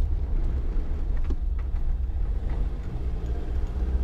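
Inside the cabin of a Land Rover Defender 90 with the 2.2 TD four-cylinder diesel, driving: a steady low engine and road drone. A few faint, brief rattles come through it, which the driver puts down to the toolkit or the camera tripod loose in the back.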